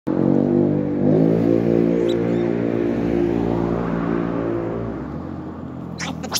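Motor vehicle engine running with a steady hum that shifts slightly in pitch, fading away after about five seconds.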